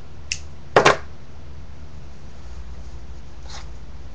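A metal multi-tool being handled and set down on a wooden tabletop: a light click, then a sharp double clack about a second in, and a faint tick near the end, over a steady low hum.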